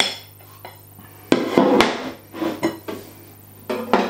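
A ceramic plate set down on a hard worktop with a loud knock about a second in and a brief ringing clatter, followed by a few lighter knocks of crockery.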